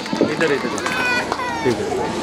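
Several girls' voices talking and calling over one another, with a couple of short knocks.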